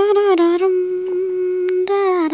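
A voice humming a wordless tune: one long held note, then a slightly higher note beginning near the end.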